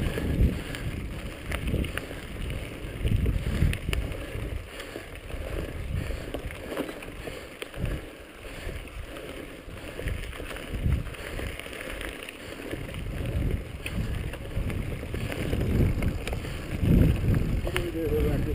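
Mountain bike ridden along a dirt trail: an uneven rumble of knobby tyres on dirt and the bike rattling over the ground, mixed with wind on the microphone.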